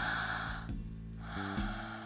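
A woman's big deep breath, drawn in and then let out about half a second later, over soft background music with held notes.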